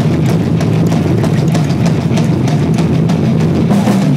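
Live heavy metal band playing: distorted electric guitar through a Marshall amplifier, with bass and drum kit hitting quickly and steadily, loud and dense as heard on a phone recording in the room.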